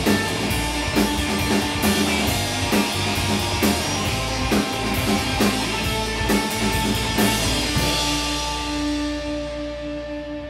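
Live rock band with electric guitar, bass and drum kit playing. The drum hits stop about three quarters of the way in, and held guitar notes ring on and fade.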